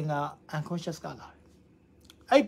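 A man speaking Burmese, trailing off into a short pause in the second half.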